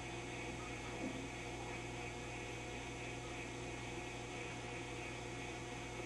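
Steady low electrical hum from a powered-up Admiral 24C16 vintage tube television. The set's sound channel is not working, so no programme audio is heard.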